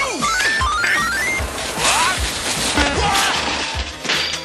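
Cartoon background music with slapstick sound effects: a quick rising run of short notes in the first second and a half, over busy crashing and clattering noise.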